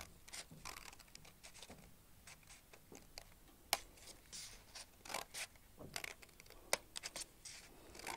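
Small scissors cutting through folded paper in a series of faint, short snips, with one sharper click a little before the middle.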